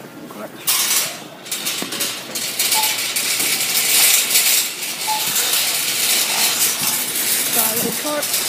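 Shopping cart being pushed: its wire basket and wheels rattle and clatter continuously, starting under a second in.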